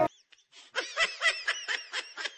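A person's quick, high-pitched snickering laugh: short repeated bursts about four a second, starting under a second in and growing fainter.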